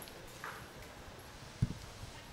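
Quiet room with a single short, dull thump about a second and a half in.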